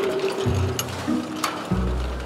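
Background music with a bass line stepping between held low notes, and a few sharp clicks over it.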